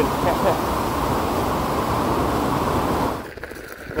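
Waterfall rushing close by: a steady wash of falling whitewater that drops away abruptly a little after three seconds in, leaving a much quieter outdoor background.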